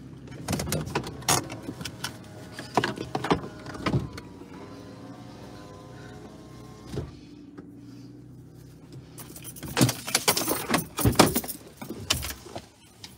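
Knocks, clicks and rustling of someone moving about inside a parked car, with a steady hum for a few seconds in the middle. A louder cluster of knocks and rattles comes near the end.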